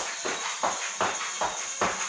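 Feet landing on a wood floor during jumping jacks, a regular beat of thuds about two and a half a second.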